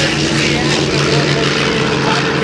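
Grumman F7F Tigercat's twin Pratt & Whitney R-2800 radial engines at full takeoff power as it climbs out low overhead: a loud, steady propeller drone.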